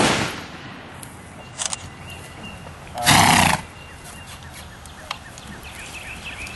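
A gunshot right at the start, its report dying away over about half a second. About three seconds in, a horse gives a loud, brief whinny lasting about half a second.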